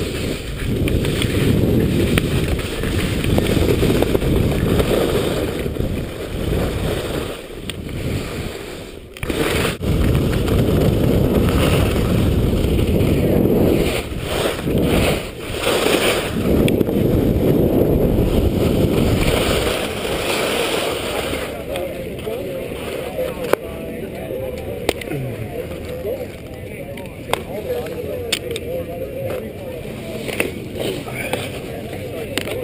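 Wind buffeting a helmet-mounted camera, with skis sliding over spring snow on a downhill run. About twenty seconds in the noise drops away as the skier slows and stops, leaving quieter background voices and a few sharp clicks.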